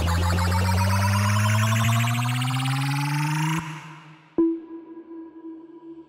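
Electronic bass music from a live DJ set: a build-up with a rising synth sweep cuts off suddenly about three and a half seconds in. A moment later a single sharp hit sets off a held, ringing synth tone.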